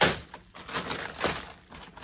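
Plastic bags of frozen vegetables crinkling and knocking against each other as they are moved about in a chest freezer: a sharp clatter at the start, then a few lighter rustles.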